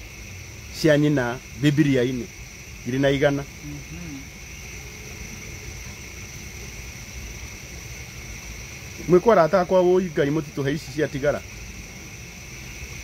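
Crickets chirring steadily in the background as two unbroken high-pitched bands. Short stretches of speech come over them about a second in and again around nine seconds in.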